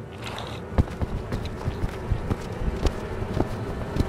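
Footsteps of two people hurrying over grass, an uneven series of footfalls.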